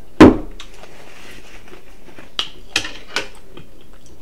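A glass jar set down on a tray with one sharp knock just after the start, followed by a few softer clicks and smacks of chewing in the second half.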